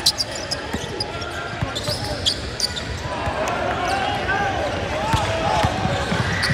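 Basketball dribbled on a hardwood gym floor during play, a run of irregular thuds, with background voices and shoe squeaks echoing in the large gym.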